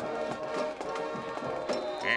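Marching band playing, with steady held notes.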